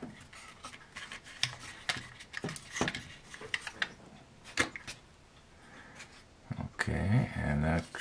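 Small plastic model-kit parts clicking and tapping as they are handled and test-fitted: a scattering of light, irregular clicks. A short murmur of voice comes near the end.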